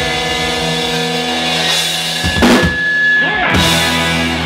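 Live rock band (electric guitars, bass guitar and drum kit) holding sustained chords over a low bass note, with a loud crashing drum and cymbal hit about halfway through and another about a second later.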